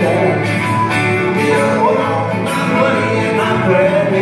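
A live country-bluegrass band playing, with strummed acoustic guitars and a bowed fiddle and a sung vocal line.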